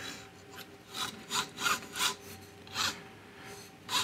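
About five short scraping rubs from handling an inkjet printer's paper-feed roller assembly: a textured rod with a plastic drive gear and encoder disc being turned and shifted in the hands.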